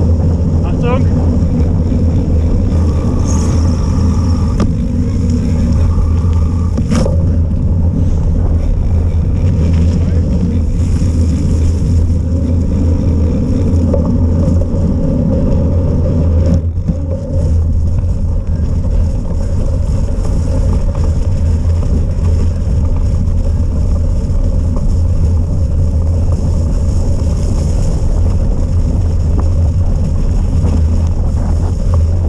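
Loud, steady low rumble of wind buffeting a camera microphone on a cyclocross bike ridden at race speed, mixed with tyre noise over a paved path and snowy grass.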